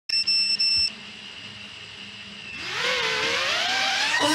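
A high electronic beep lasting under a second with two short breaks, then quieter until a wavering, rising synthesizer tone comes in about two and a half seconds in and leads into music.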